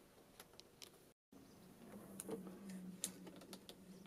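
Near silence: a few faint light clicks of handling, with a brief total dropout in the sound just after a second in, followed by a faint low hum.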